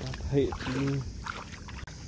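Water sloshing and splashing as someone wades barefoot in shallow river water.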